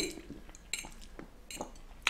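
Metal fork clinking and scraping against a ceramic bowl of noodles, a few short clinks.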